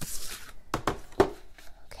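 Black cardstock sliding off a scoring board with a papery rustle, then a few sharp taps and knocks as the paper and board are handled, the loudest a little past halfway.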